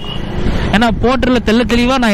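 A man talking over the steady engine and road noise of a motorcycle being ridden in traffic; for a moment at the start, before he speaks again, only the riding noise is heard.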